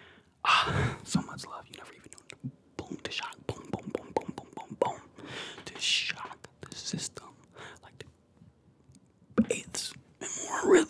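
A man's breathy whispering and mouth sounds made right up against a condenser microphone, wordless. A loud breathy burst comes about half a second in, then softer mouth clicks and breathy whispers follow, with a lull before another burst near the end.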